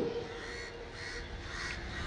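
Faint open-air background in a pause between sentences of amplified speech, with bird calls in it.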